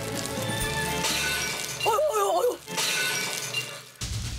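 Background music with a short burst of a voice about two seconds in, over a noisy crash-like sound.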